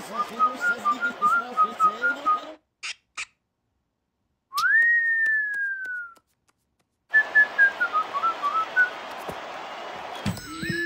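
Cartoon whistling: a quick run of short whistled notes over a soft hiss, then two faint clicks. One long whistle follows, jumping up and then sliding slowly down, and after a pause comes another run of whistled notes that dips and climbs again.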